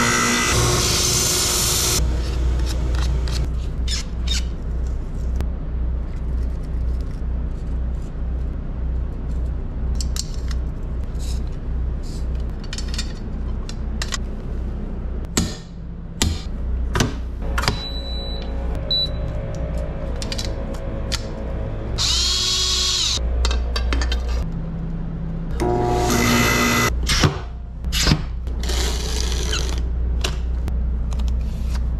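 Background music with a steady low beat under workshop power tools. A cut-off saw cuts a golf club shaft in the first two seconds. Further short power-tool runs come later, loudest about two-thirds of the way through and again near the end.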